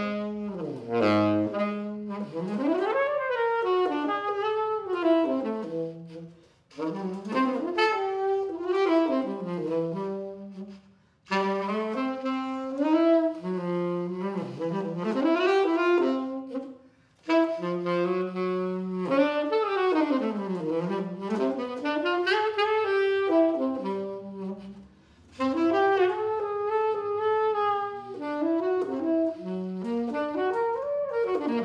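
Selmer Paris Mark VI tenor saxophone played solo: melodic phrases with quick runs up and down the range, broken by a few short pauses between phrases.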